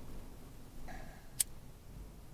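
Low, steady rumble of a Toyota 4Runner driving along a leaf-covered forest trail, with a single sharp click about halfway through.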